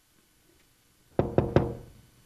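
Three quick, loud knocks on a wooden door, each ringing briefly.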